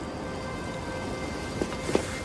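Film soundtrack: a sustained musical drone of several steady held tones over an even, hiss-like background ambience, with two soft knocks near the end.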